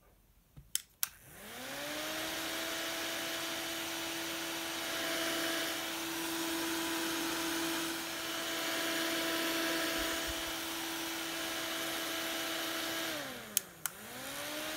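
Children's handheld rechargeable mini fan switched on with two button clicks. Its small electric motor spins up with a rising whine and settles into a steady hum with rushing air. Near the end the pitch falls as it winds down, and two more clicks follow.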